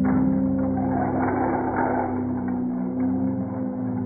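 A tall tower of stacked thin wooden building planks collapsing: a clatter of wood on wood that starts at once and dies away after about two and a half seconds. Steady, sustained background music tones play underneath.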